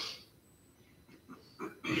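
A man's speech trails off into a pause of about a second of near silence, then a few brief, faint breathing noises just before he speaks again.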